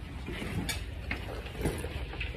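Phone microphone handling noise: a low rumble with a few knocks and rustles as the phone is jostled against clothing.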